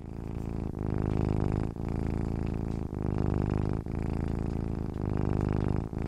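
Domestic cat purring steadily, in stretches of about a second with a brief break between each breath.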